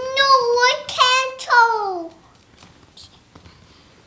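A young child's high voice singing held, wordless notes that slide downward, for about two seconds. After that the voice stops and only faint small sounds remain.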